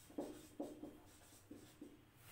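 Marker pen writing on a whiteboard: a handful of short, faint strokes as words are written.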